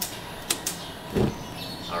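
Cast-iron gas wok burner being turned on: a few sharp clicks from the valve and igniter, then a short thump about a second in.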